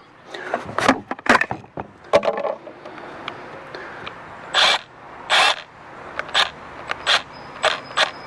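Handling noise from cordless power tools being moved about: scattered clicks and knocks, with two short scraping rustles near the middle, as the hedge trimmer is picked up. No motor runs.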